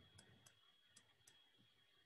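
Near silence: room tone with four faint, sharp clicks in the first second and a half, over a faint steady high-pitched whine.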